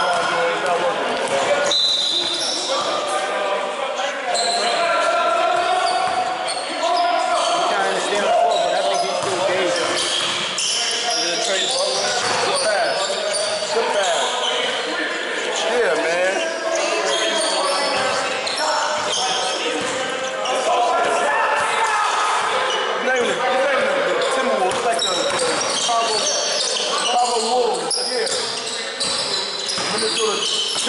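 Basketball being dribbled and bounced on a gym floor during live play, with sneakers squeaking and players calling out, all echoing in a large hall.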